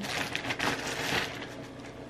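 Rustling and crinkling as a folded shirt and its packaging are handled and unfolded. The sound is busiest in the first second and dies down toward the end.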